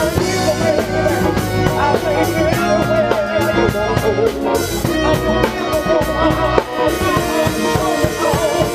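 A live band with a horn section playing: drum kit, hand percussion, guitar and keyboard under trumpets, all at full volume.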